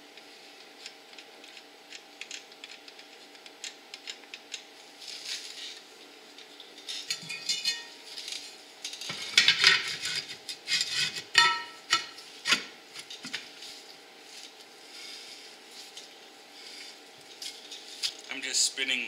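Metal clinking and scraping as a brake drum is handled and slid over the hub and drum brake shoes to test the shoe adjustment, with light scattered ticks at first and the loudest clanks about nine to thirteen seconds in.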